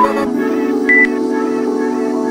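Workout interval-timer beeps over background music: a short beep ends just after the start, then a single higher-pitched beep about a second in, marking the switch to the next exercise.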